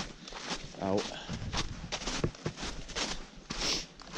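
Footsteps of a hiker walking along a trail, a quick, even run of steps, with a spoken word near the start.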